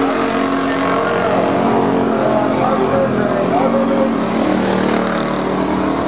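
Several Thunder Car stock cars racing on a paved oval, their engines running hard together in a steady, continuous drone of overlapping pitches that rise and fall as the cars pass.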